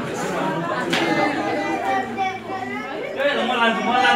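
Several people talking at once: overlapping conversational chatter, with one voice coming through louder near the end.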